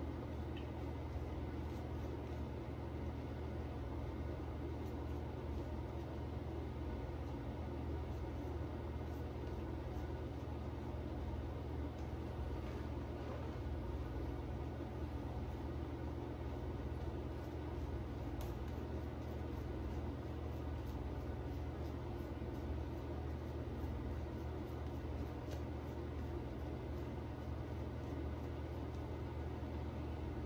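Shaving brush working soft soap lather onto a face, faint bristly strokes over a steady low hum of room noise.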